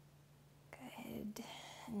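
A woman's audible breath, soft and breathy, starting about a third of the way in and lasting about a second, just before she speaks again. A faint steady low hum runs underneath.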